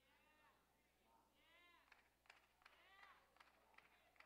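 Near silence in a pause of a sermon, broken by faint distant voices from the congregation calling out a few short responses.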